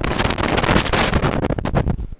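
Dense crackling rustle on the microphone, like a clip-on mic rubbing against clothing, made of many rapid sharp crackles that cut off suddenly at the end.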